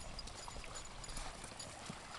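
Faint, irregular crunching of footsteps on a pebble and sand beach, over quiet outdoor background noise.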